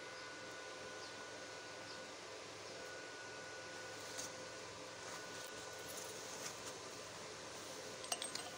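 Faint steady background hiss with a thin high tone running through it and a few faint ticks; no welding arc is heard.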